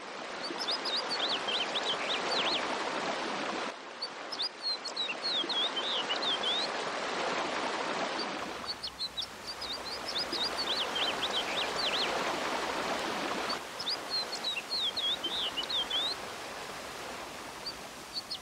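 Steady splashing of a pond fountain's water jet, with a songbird singing a short, fast phrase of chirping notes every few seconds.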